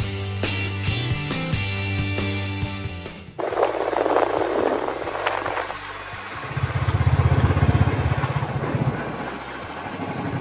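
Background music with a steady beat, cut off abruptly about a third of the way in. Then a motorcycle in motion on a road: engine and road noise, with a low engine rumble growing louder past the middle and easing near the end.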